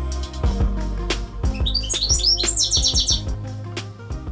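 Background music with a steady beat. About a second and a half in, a Eurasian siskin gives a run of high chirps that becomes a fast twittering trill, lasting about a second and a half.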